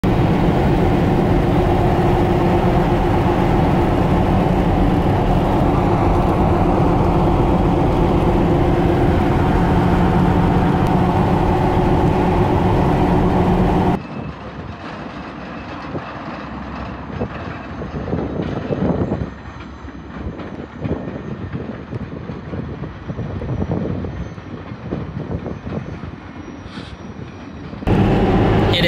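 Steady road and engine noise inside a moving vehicle on a wet highway, with a constant drone. About halfway through it cuts to a quieter, uneven rumble of a passing passenger train pulled by two diesel locomotives, swelling and fading a couple of times.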